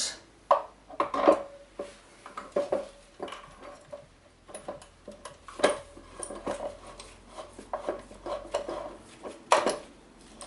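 Metal clinks and knocks of a motorcycle rear sprocket being worked onto the splines of the wheel hub, many short irregular taps and clanks, the sharpest about a second in and near the end.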